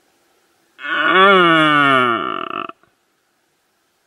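Red deer stag roaring: one loud call of about two seconds, starting just under a second in, that dips in pitch toward its end and then breaks off.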